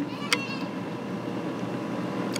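A lull in conversation filled by a steady outdoor background hum, with a brief faint click about a third of a second in.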